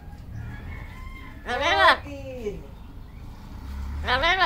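Amazon parrot giving one loud, drawn-out call about a second and a half in, a cry that rises and falls like the "mama" it has been repeating, trailing off in a falling note.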